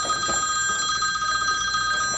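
Mobile phone ringing: an electronic trilling ringtone of a few steady high pitches with a fast warble, going on without a break.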